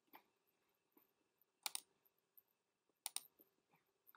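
Computer mouse clicking against near silence: a faint click just after the start, then two sharper clicks about a second and a half apart, each a quick double tick.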